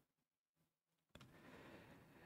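Near silence: faint room tone, with one faint click about a second in.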